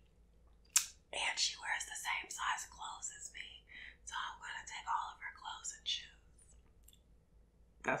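A woman whispering for several seconds, after a sharp click a little under a second in.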